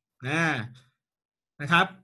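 Speech only: a man says a drawn-out Thai "na", then after about a second's pause a short "na khrap".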